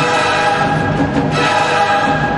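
Orchestral music with a choir singing held chords.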